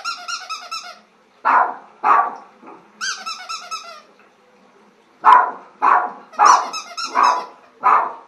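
Small terrier barking about seven times in quick pairs and threes. Between the barks come three runs of rapid, high-pitched squeaks, each about a second long.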